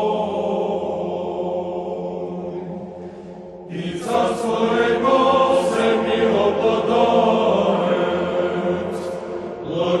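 Orthodox choir chanting: a sustained chord fades away about three seconds in, then a new sung phrase begins just before four seconds and carries on.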